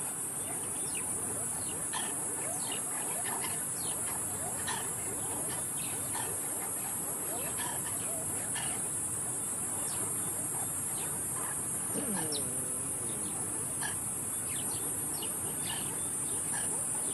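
A troop of banded mongooses giving short, rapid chirping alarm calls as they mob a python, over a steady high-pitched drone of night insects. About twelve seconds in, one longer call wavers in pitch.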